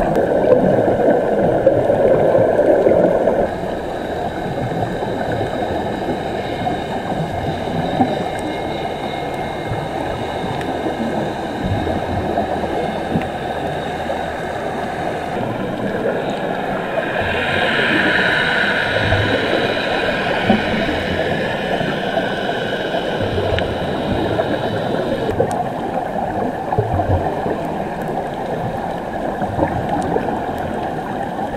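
Underwater bubbling and gurgling, heard muffled through an action camera's waterproof case, from the air streaming out of helmet divers' helmets and air hoses. It is louder for the first few seconds, and a steady hum of several tones runs through most of it.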